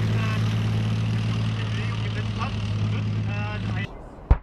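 Leopard 2 main battle tank's V12 diesel engine running with a steady low hum as the tank drives past; the sound cuts off suddenly just before the end.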